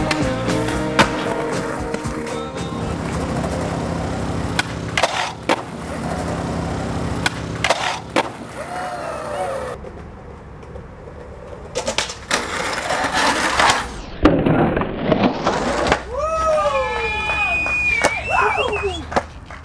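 Skateboard tricks: wheels rolling on pavement with sharp pop-and-landing clacks, over soundtrack music that drops out about ten seconds in. Rolling noise and a few more clacks follow, and voices call out near the end.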